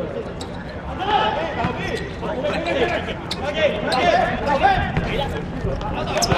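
Men shouting to each other during a football match, several voices overlapping, with a couple of sharp knocks of the ball being kicked.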